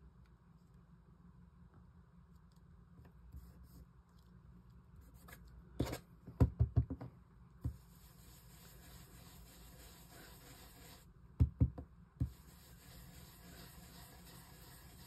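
A cluster of sharp knocks and taps about halfway in, then a round blending brush rubbed over a paper stencil on card, a soft steady scratchy brushing. A few more knocks break it near the end.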